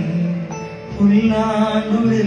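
A man singing slow, long-held notes into a handheld microphone over an electronic keyboard accompaniment; one phrase dips and a new one begins about a second in.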